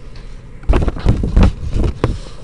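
Paper and a graphing calculator being shifted on a desk close to the microphone: loud rustling and bumping handling noise that starts a little under a second in and comes in several uneven bursts.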